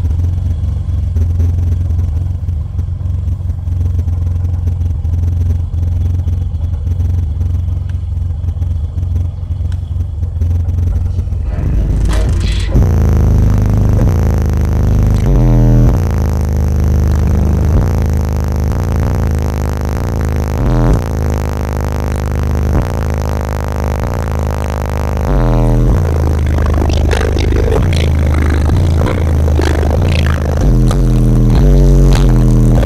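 A bass-heavy song played loud on a car audio system driven by an HDS215 subwoofer on 850 watts. For the first twelve seconds it is mostly deep bass, then the full song comes in with mids and highs.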